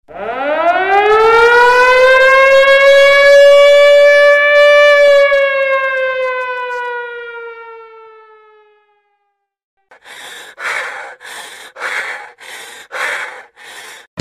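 Air-raid siren sound effect in the routine's music track, played over a hall's PA: one wail that rises quickly, holds, then slowly falls and fades over about nine seconds. After a short silence come about eight short noisy pulses, roughly two a second.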